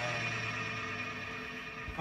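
Electronic keyboard struck hard as a dense cluster of notes, ringing on as a thick, wavering drone of many tones that slowly fades, like a spacey synthesizer texture.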